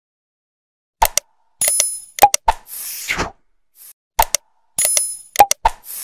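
Outro sound effects for a subscribe animation: sharp clicks, a bell-like ding and a whoosh. The set starts about a second in and repeats about every three seconds.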